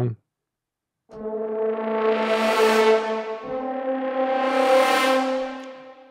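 Sampled French horn ensemble from Orchestral Tools' Metropolis Ark 3 atonal horn patch playing its 'half note down' articulation. A held brass chord starts about a second in, brightens as it swells, moves to a second held pitch about halfway through, swells again and fades out near the end.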